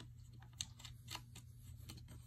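A few faint, sharp clicks and taps of the wooden guitar stand's parts being handled as the holder arm is fitted into the frame, over a steady low hum.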